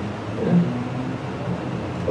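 Steady low room hum in a pause between words, with one short faint voice sound about half a second in.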